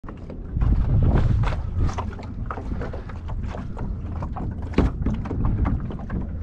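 Wind rumbling on the microphone, with small waves slapping against a boat hull and a kayak alongside it, making many irregular knocks and splashes. The rumble is heaviest in the first second and a half.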